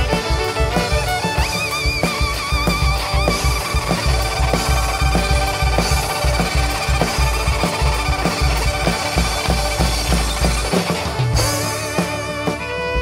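Live folk-rock band playing, a fiddle line with vibrato over drum kit, bass and guitar with a steady beat. The beat drops out about a second before the end.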